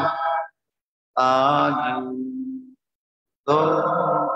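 A man's voice chanting Buddhist devotional phrases in long, held tones, three phrases with abrupt silences between them, the sound clipped on and off by the video call's audio.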